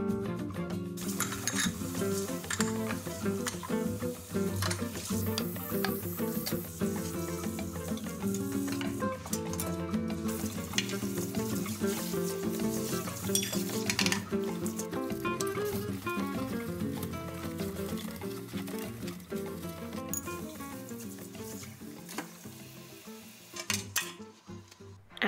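Background instrumental music, guitar-led, fading down near the end, with hissing tap water and dishes being handled in a kitchen sink under it.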